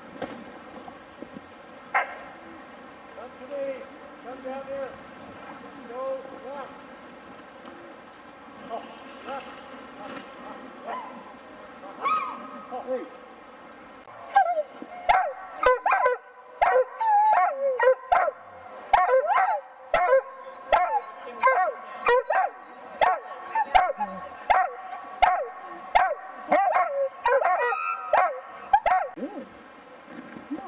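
Excited sled dogs barking and yipping: scattered, fainter calls at first, then from about halfway a loud, rapid run of barks, roughly two a second.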